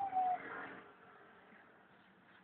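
A toddler's drawn-out whining cry, one held note that tails off in the first half second. After it there is only faint room sound.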